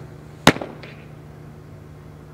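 A fastpitch softball dropball smacking into a leather catcher's mitt: one sharp, loud pop about half a second in, followed by a fainter short crack.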